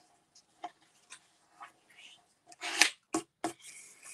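Scored cardstock being folded and pressed flat by hand: light paper rustling and scraping with a few soft taps, the loudest rustle a little before three seconds in.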